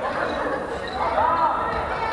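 Basketball game on a hardwood court: sneakers squeaking on the floor as players jostle for a rebound, with a ball bouncing and players' voices.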